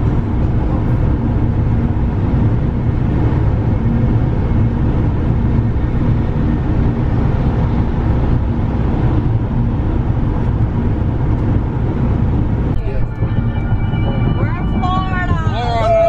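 Steady road and engine noise heard from inside a moving van's cabin at highway speed. About 13 seconds in, music with a singing voice comes in over it.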